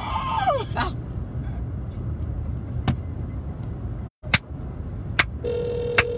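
Steady low rumble of a car interior, broken by a few sharp clicks, then a steady telephone tone that starts about five and a half seconds in and holds for over a second, heard from a call on speakerphone.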